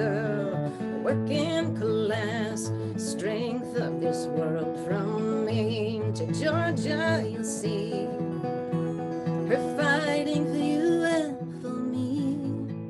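A woman singing a Finnish folk song with vibrato, accompanied by fingerpicked acoustic guitar; the voice comes in phrases with guitar notes sounding between them.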